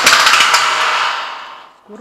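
Airsoft gun on full auto: a dense, rapid rattle of shots that starts suddenly and fades out over about a second and a half.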